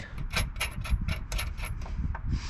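Small metal hardware clinking: zinc-plated washers, spacers and nuts knocking together as they are handled and fitted onto a bolt by hand, a quick irregular run of light, ringing clicks.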